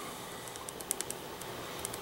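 Ballpoint pen writing on paper: a series of faint, short scratching strokes.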